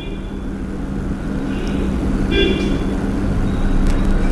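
Marker squeaking on a whiteboard in short strokes while writing, two brief high squeaks a little over a second apart, over a steady low hum.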